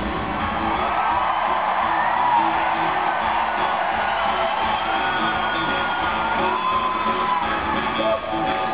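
Arena crowd cheering and whooping, with long rising-and-falling whoops, over a live rock band.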